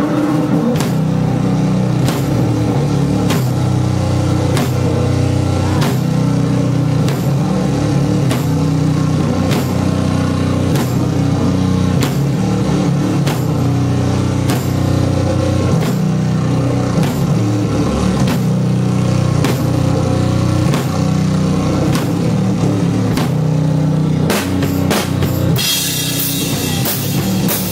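Live rock band playing loud: a drum kit keeping a steady beat of about three hits every two seconds over sustained low bass and guitar notes, with a quick drum fill near the end.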